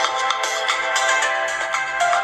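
Pop music with a steady beat playing loudly through the Asus Zenfone 3 Zoom's built-in loudspeaker, sounding thin with almost no bass.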